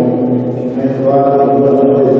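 A man's voice through a microphone and PA in an echoing hall, speaking in long, drawn-out sing-song syllables.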